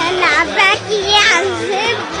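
Children's voices, high and wavering, over background music with a steady beat.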